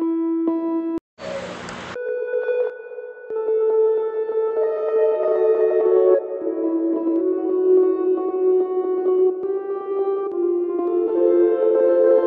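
A held tone that cuts off about a second in, then a short burst of hiss. From about two seconds on, a granular pad made in FL Studio's stock sampler from a tonal sample: overlapping held tones whose notes change every second or two.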